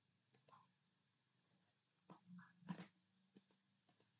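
Near silence with a few faint computer mouse clicks, some in quick pairs, as options are picked on screen.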